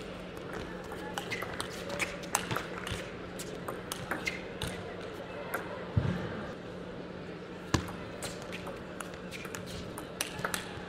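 Table tennis ball clicking off rackets and table in a run of short, sharp ticks, over a steady background murmur of voices and a low hum in a large hall, with one duller thump about halfway through.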